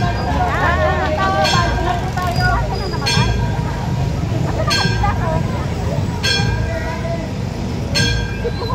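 A short, sharp horn-like toot repeats evenly about every one and a half seconds over the chatter of a crowd.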